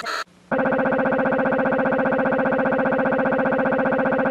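A short pulsing sound, a brief gap, then a steady buzzing tone with many overtones and a fast, even flutter that holds unchanged for over three seconds. It is typical of a YouTube Poop stutter effect, where a tiny snippet of the soundtrack is looped very rapidly.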